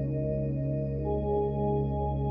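Space ambient music: layered, sustained drone tones held steady, with a new higher tone entering about a second in.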